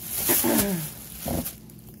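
A woman clearing her throat: rough, low vocal noises with a short falling hum near the start and a second rasp a little past the middle, over a rustle of groceries being handled.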